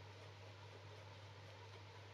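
Near silence: faint room tone with a steady low hum.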